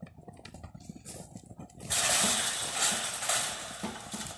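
A bull running across a dirt corral, its hooves knocking on the ground, with a loud rushing noise that starts about halfway through and lasts about two seconds.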